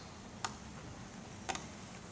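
Two short sharp clicks about a second apart over quiet room hiss.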